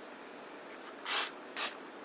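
Aerosol can of Sally Hansen Airbrush Legs tinted leg makeup spraying: a faint short hiss, then two short sprays about a second in, half a second apart.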